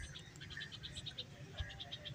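Faint outdoor ambience with a small animal calling in a rapid run of short, high pips, about six a second, clearest in the second half.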